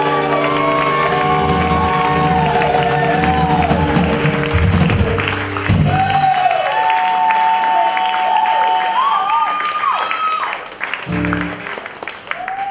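A live band with horns and violin holds sustained chords under a female lead singer's ornamented vocal; about six seconds in the band cuts out and she sings a long, runs-laden line alone over audience cheering. Near the end the band comes back in with short chord hits.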